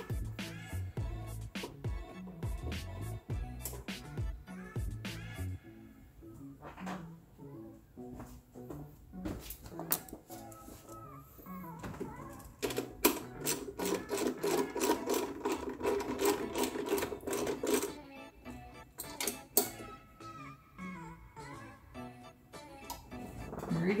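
Background music, with a ratchet wrench clicking in quick runs as the throttle body's screws are tightened. The longest run of fast clicking comes about halfway through.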